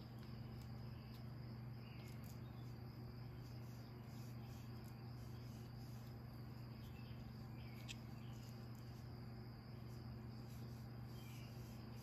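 Faint room tone: a steady low electrical hum with a thin, steady high whine above it, and a few faint ticks.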